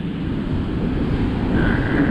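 Ocean surf breaking and washing up the sand in a steady rushing noise, with wind rumbling on the microphone.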